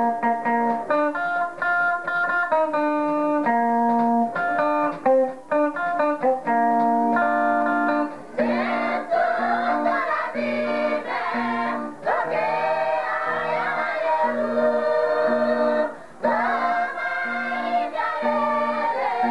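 Gospel song: a guitar plays a stepped melody over a repeating bass line, and about eight seconds in a group of voices joins in singing.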